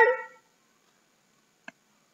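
A child's voice trailing off at the very start, then near silence with one faint click about one and a half seconds in.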